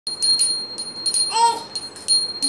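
A small bell rung repeatedly, about five strikes with a steady high ring carrying between them. A brief high-pitched sound cuts in about three-quarters of a second before the end.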